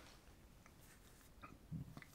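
Near silence: room tone, with one faint, short low sound near the end.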